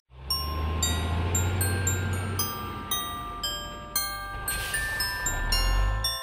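Background Christmas music: a chiming melody of struck, ringing notes over a steady low bass line, starting suddenly at the beginning.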